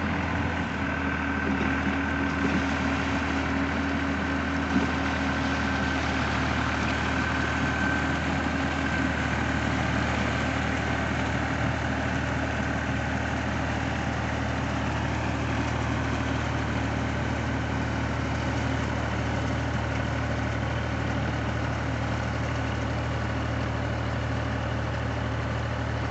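Tractor diesel engine running steadily under load, powering a PTO-driven bund former that cuts and shapes a mud ridge along a flooded paddy field. A thin high whine over the engine's low hum fades away about ten seconds in.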